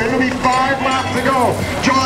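A man's race commentary voice, with music playing underneath.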